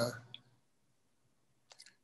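A man's voice trails off, followed by near silence on a video call, broken by a few faint short clicks near the end.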